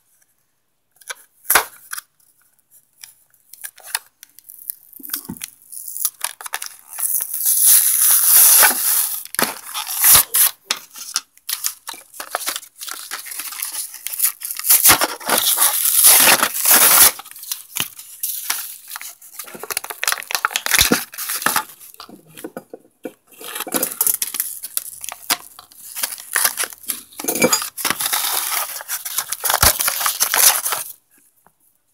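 A Littlest Pet Shop toy blister pack being opened by hand: the plastic bubble crinkling and clicking and the cardboard backing tearing, in irregular bursts of crackling, sparse at first and busier from about six seconds in.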